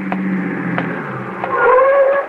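Radio-drama street sound effects: footsteps at a steady walk, one about every two-thirds of a second, under a low held tone that fades out about a second in. Near the end a car horn sounds.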